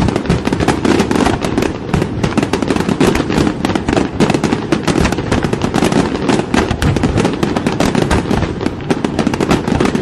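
Fireworks crackling in a dense, continuous barrage of rapid sharp pops.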